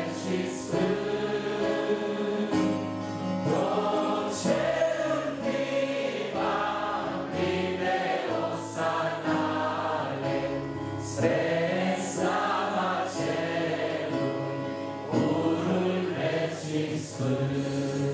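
A man singing a slow Romanian Christian worship song into a microphone, accompanied by long held keyboard chords.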